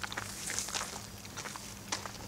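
Footsteps on a gritty concrete path: several uneven scuffing steps of someone walking.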